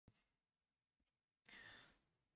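Mostly near silence, with a faint click at the very start. Near the end comes a short, soft intake of breath lasting about half a second.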